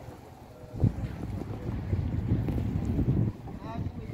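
Wind buffeting the phone's microphone: a low rumble that starts with a sharp gust about a second in, lasts a little over two seconds and then drops away.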